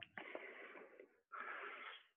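A man breathing, faint: two long breaths, the second starting just over a second in.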